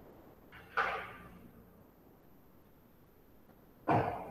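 Mostly quiet room tone over a video-call line, broken by one short burst of noise about a second in that fades within half a second, and a brief sharp sound just before the end.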